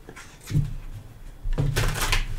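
A deck of oracle cards being shuffled by hand: a soft rustle and riffle, louder from about a second and a half in.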